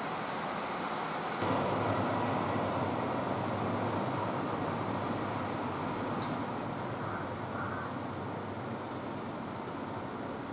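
Steady traffic rumble, then from about a second and a half in a louder rumble of a train with a steady high-pitched wheel squeal, slowly fading.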